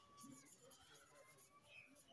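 Near silence, with faint scratching of a marker pen writing words on a whiteboard.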